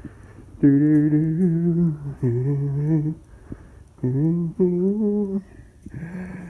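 A man humming a short tune in about four held notes, his pitch wavering slightly on each.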